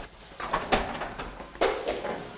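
A few short, sharp clatters of kitchen utensils and cookware at the cooking stations, about three knocks over two seconds.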